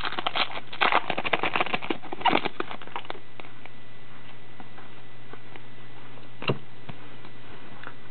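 Foil wrapper of a trading-card pack crinkling and tearing as it is pulled open, a dense crackle for about the first three seconds. Then quiet card handling with a single sharp tap about six and a half seconds in, over a low steady hum.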